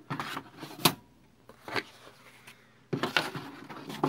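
Hanging file folders being pushed along the metal rails of a file cabinet drawer: a few short clicks and scrapes from their metal hooks and the folder stock. The loudest comes about a second in, and a cluster follows near the end.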